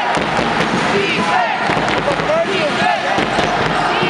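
Basketball game on a hardwood court: many short sneaker squeaks as players cut and stop, with the ball bouncing and a crowd's voices and shouts.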